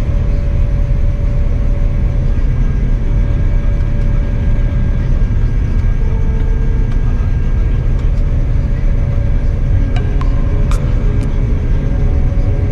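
Claas Lexion 8800TT combine harvester running under load while cutting barley, heard from inside the cab as a loud, steady low rumble. A few faint clicks come in the last few seconds.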